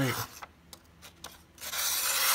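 A sharp 440C-steel folding-knife blade slicing through a sheet of paper. After a few faint ticks, a hissing rasp of the cut starts about one and a half seconds in and carries on.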